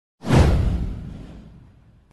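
A whoosh sound effect with a deep rumble under it. It swells in suddenly about a fifth of a second in, sweeps downward and fades away over about a second and a half.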